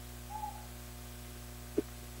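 Steady electrical mains hum from the sound system during a pause in speech, with a short faint tone about a third of a second in and a single brief pop near the end.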